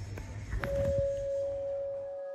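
A bell-like note of background music starts about half a second in and rings on steadily, over a low rumble and a few soft knocks.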